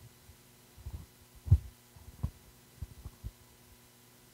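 About six short, low thuds at uneven spacing, the loudest about one and a half seconds in, over a faint steady electrical hum.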